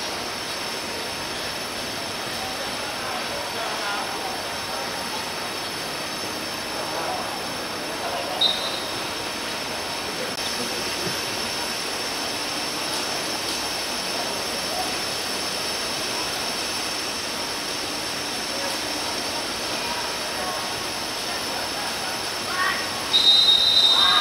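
Referee's pea whistle: a short blast about a third of the way in, then a long trilling blast near the end that stops play as a player goes down. Under it, a steady outdoor hiss with faint distant shouts from players.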